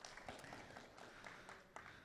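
Faint, scattered audience clapping dying away over near-silent hall room tone.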